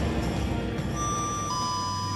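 Background music fading out, then a two-note descending chime, a high note about a second in and a lower one half a second later: an airliner cabin's public-address chime before a crew announcement. A steady low hum runs underneath.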